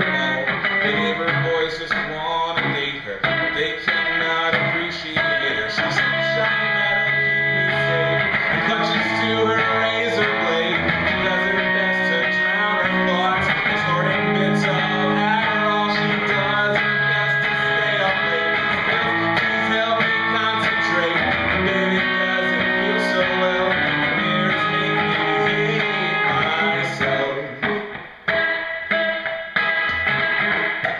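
Electric guitar played live and strummed, ringing chords in a continuous song passage, with a brief drop in loudness near the end.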